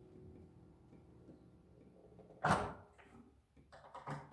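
Speaker connection being swapped at the back of a running Marshall tube amp head. A faint guitar note dies away, then a sudden loud pop comes about two and a half seconds in, followed by a few light clicks near the end.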